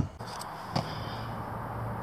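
A sharp metallic knock, then two lighter clicks, over a low steady hum: the ATV's front CV axle and knuckle being handled just after the axle stub has come free of the wheel bearing.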